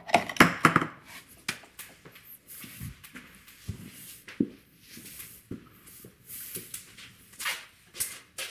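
Scattered rustling and handling noises, busiest in the first second, then a few soft clicks and knocks with quiet between them.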